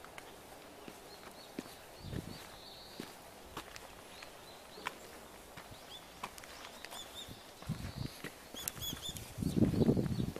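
Small birds chirping now and then, short high calls with a quick run of them near the end. Scattered light clicks run through, and near the end come louder, low crunching footsteps.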